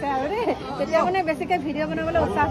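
Several women talking and chatting at once, over a light background hubbub of a crowd.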